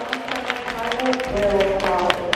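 Sports-hall background of several people's voices talking, with scattered sharp knocks and claps.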